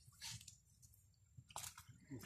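Faint wet squelching and splashing, twice, a brief one near the start and a stronger one past halfway, as live fish are handled in a plastic basket in shallow muddy water.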